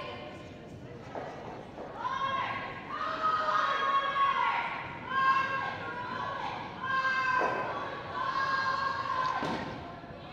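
Curlers shouting long, high-pitched sweeping calls to each other as brooms sweep a granite curling stone down the ice, with a couple of sharp knocks in the last few seconds as it reaches the stones in the house.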